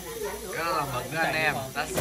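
A person talking over the faint, steady sizzle of squid frying on an electric griddle.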